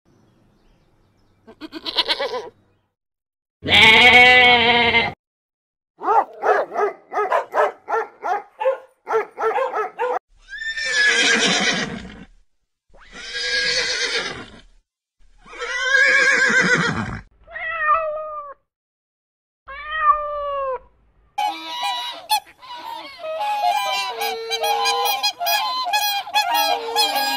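A string of separate animal calls: a goat bleating, then a horse whinnying three times, each call falling in pitch, then a fast run of waterfowl honking near the end.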